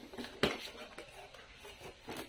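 A plastic-wrapped cardboard box being turned over in the hands: light crinkling and handling noise, with one sharp click about half a second in.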